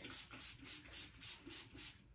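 Quick, regular back-and-forth rubbing strokes, about four a second, that stop near the end.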